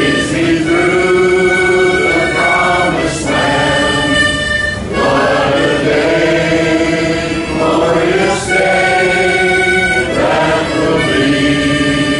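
Large multi-tiered chord harmonica playing a slow hymn tune in sustained chords, each chord held for one to three seconds before moving to the next.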